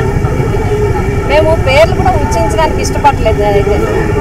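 A woman talking to a press microphone, over a constant low rumble and a steady hum.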